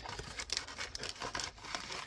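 Cardboard trading-card blaster box being opened by hand and its wrapped card packs slid out: irregular crinkling, rustling and light scraping with small clicks.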